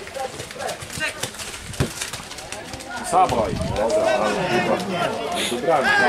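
Men's voices shouting "O! O! O!" and "Brawo!" in cheering encouragement at a football match, starting about three seconds in. Before that it is quieter, with a couple of sharp knocks.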